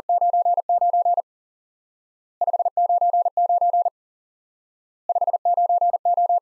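Morse code practice tone sending "599" three times at 40 words per minute: a single steady tone keyed in rapid dits and dahs, in three bursts of about a second and a half each with a pause between.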